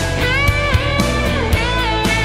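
Instrumental break in a rock-pop song: a lead guitar plays bending, sliding notes over bass and a steady drum beat.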